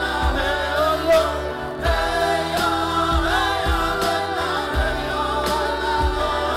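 A woman sings a sustained, wavering melody into a microphone over a live band's backing, with a kick drum hitting about once a second.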